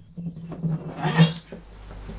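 High-pitched feedback squeal from a powered speaker, fed by a very high-gain two-stage 12AX7 tube preamp with a dynamic microphone on its input, the speaker volume set too high. The steady whistle rises a little in pitch over a low hum, then cuts off suddenly about one and a half seconds in.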